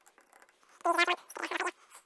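Pencil scratching marks onto a timber gate rail through the screw holes of a galvanised ring latch handle. Two short high-pitched whines of unclear origin come about a second in.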